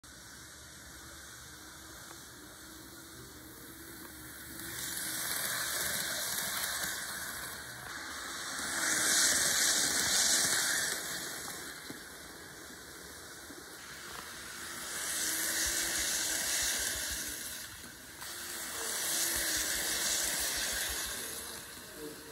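N scale model train running on track, its small motor and wheels on the rails giving a whirring hiss that swells and fades four times as it passes close by.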